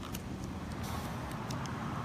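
Low steady hum of a ReVel transport ventilator running, with a few faint clicks as its tidal-volume knob is turned down.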